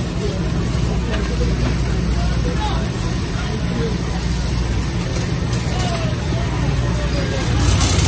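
Shopping cart rolling across a warehouse store's concrete floor, a steady rolling rumble, under background chatter of shoppers.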